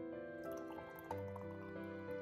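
Background song with held notes, and underneath it a thick pink fruit drink being poured into a stemmed wine glass, a liquid splashing and dripping sound that starts about half a second in.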